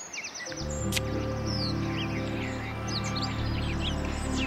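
Soft background score that enters about half a second in with sustained low chords, over a steady bed of chirping birdsong.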